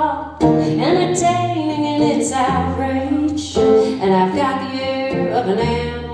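A woman singing live to her own strummed acoustic guitar.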